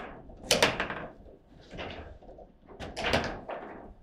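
Foosball table in play: sharp knocks and clacks as the ball is struck by the rod figures and the rods bang and slide. The loudest clatter comes about half a second in, and another comes about three seconds in.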